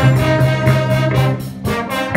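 Student jazz big band playing, with trombones and trumpets holding sustained chords over a steady drum beat. The music dips briefly near the end.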